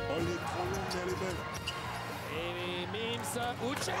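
Basketball game play on a hardwood court: a ball bouncing, with short squeaks that rise and fall in pitch.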